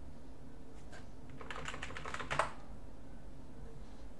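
A short run of keystrokes on a computer keyboard, about a second and a half in, typing a password into an authentication prompt.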